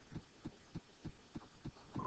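Faint, soft low thumps in an even rhythm, about three a second, from handling at the computer desk.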